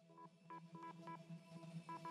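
Candyfloss Kontakt virtual instrument playing its 'Morse Code Jumble' preset from a held key: a steady low drone under short, quick beeping blips like Morse code. It starts faint and grows louder.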